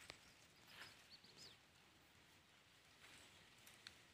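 Near silence: faint outdoor background with a couple of soft ticks and a few faint high chirps about a second in.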